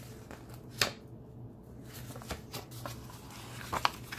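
Paper rustling and flapping as a softcover comic digest is handled and its cover and pages turned: one sharp rustle about a second in, a few lighter ones, and a quick cluster of rustles near the end.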